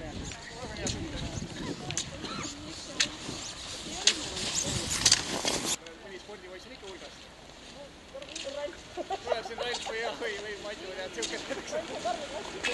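Indistinct voices of people talking, with scattered short clicks and a loud rushing noise that cuts off suddenly about six seconds in.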